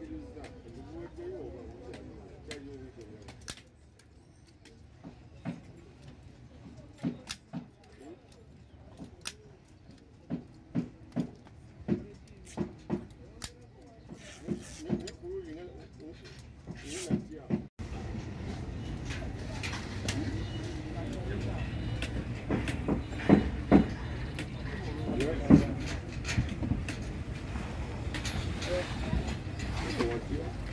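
Hand-held staple gun driving staples through foam padding into a wooden chair frame: a string of sharp, irregular clacks. After a break, voices and workshop noise, with a few loud knocks.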